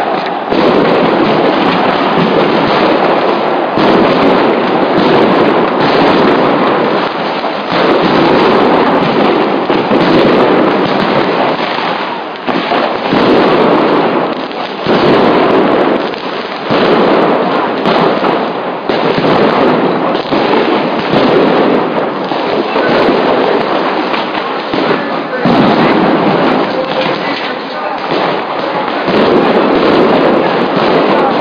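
A street clash: sharp explosive bangs every second or two over a continuous din of crowd noise and shouting.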